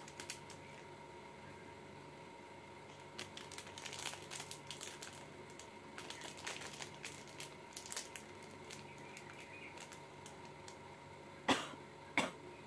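Light clicks and rustles of handling close to the microphone in irregular clusters, with two louder ones near the end, over a faint steady electrical hum.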